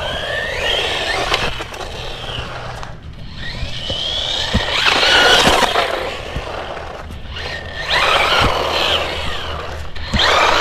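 FUUY Sweep Pro 1/16-scale brushless RC car driving on rough asphalt. The motor's whine rises and falls with the throttle over the rumble of its tyres, in three runs with short lulls about three and seven seconds in.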